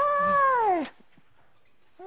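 A person's voice holding one long high note with a slight waver, then sliding down in pitch and stopping about a second in; after that only quiet room tone.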